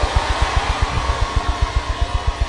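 A fast run of low drum thumps, about eight a second, over a steady wash of noise and a faint held tone, as church worship music carries on under the prayer.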